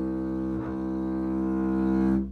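Double bass played with the bow (arco), holding one long low note that is briefly re-articulated about half a second in.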